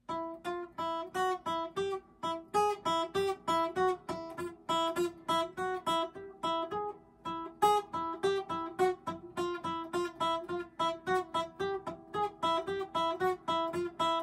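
Acoustic guitar played one note at a time as a beginner's picking exercise on the high E string: an even run of single plucked notes, about four a second, that keeps coming back to the same note.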